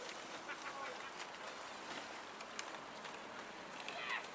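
Faint outdoor background with a few short, faint bird calls that fall in pitch, about half a second in.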